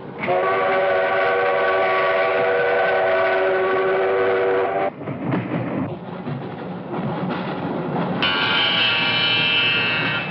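Steam locomotive whistle blowing a long, steady chord for about four and a half seconds, followed by the train running on the rails, and a second, higher whistle blast near the end.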